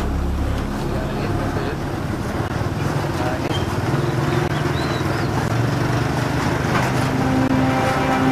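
A low steady drone with held low notes, and a few faint short chirps partway through.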